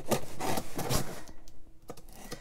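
A knife blade cutting through the parcel tape and cardboard of a box, a few scraping strokes in the first second and a half, then quieter.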